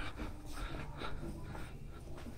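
Quiet ambience of a large store: a faint, steady background hum with no distinct events.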